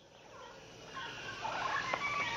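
Wild animal calls fading in from silence and growing louder, several overlapping wavering calls at once.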